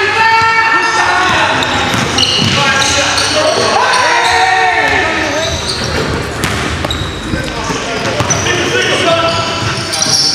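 Live indoor basketball game sound: a ball bouncing on the hardwood floor, sneakers squeaking and players shouting, echoing in the gym.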